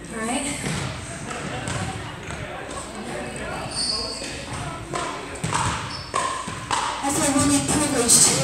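Indistinct voices talking in a large, echoing hall, with a brief high squeak about four seconds in.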